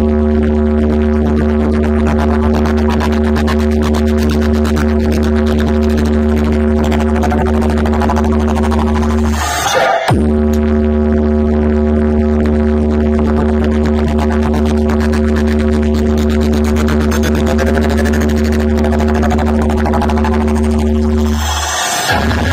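Large DJ speaker box stack playing a bass vibration test track: a deep, steady bass drone with held tones above it for about nine seconds, broken briefly by a short sweep about ten seconds in, then held again until just before the end.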